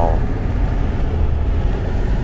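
Steady low rumble of tyre and engine noise inside the cabin of a moving Kia car on an asphalt road.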